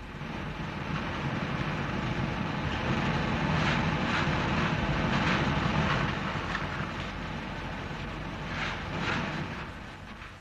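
Colliery pithead machinery running: a dense rattling rumble that builds over the first few seconds and eases toward the end, with several metallic clanks through the middle and again near the end.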